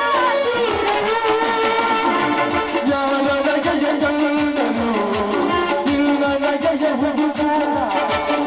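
Live music for a Kannada folk stage drama: a held keyboard-like melody over a steady, fast drum beat of about four beats a second.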